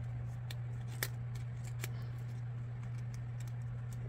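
Paper pieces being handled: faint ticks and rustles as a small paper sentiment strip is worked onto a die-cut paper embellishment, with one sharper click about a second in, over a steady low hum.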